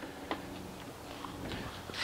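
Quiet background: a faint steady low hum with a few light ticks.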